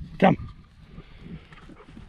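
A man calls "come" once to his dogs, then a low, steady rumble of wind on the microphone continues.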